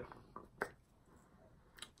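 A few faint, short clicks from a small candle being handled in the fingers, over quiet room tone.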